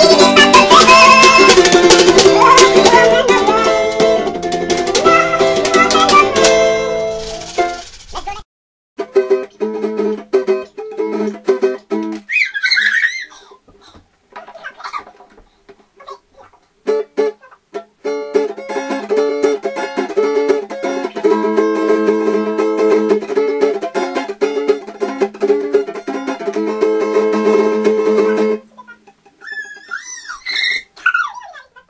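Acoustic guitar playing, dense and loud. About eight seconds in it cuts abruptly to another acoustic guitar, quieter, strummed in repeated chords with a few seconds' break in the middle.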